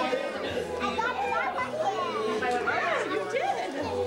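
Young children's voices chattering over one another, with no single clear speaker.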